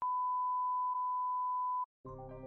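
Broadcast colour-bar test tone: one steady, unwavering beep held for just under two seconds, with a slight blip about halfway, then cutting off suddenly.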